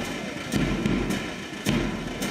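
A brass band's bass drum beating a steady pulse, a little under two strokes a second, counting in before the brass plays.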